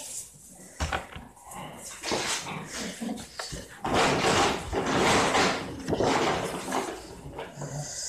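A dog barking, several barks in a row.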